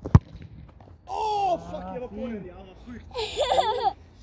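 A football kicked hard, one sharp thump at the start, followed by two loud shouted vocal exclamations.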